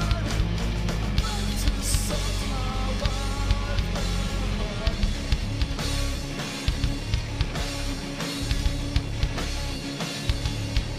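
Live rock band playing an instrumental passage: two electric guitars, bass guitar and a drum kit played together at a steady beat.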